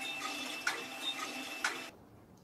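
A machine running steadily with a faint high whine, and two sharp clicks about a second apart; the sound cuts off abruptly near the end.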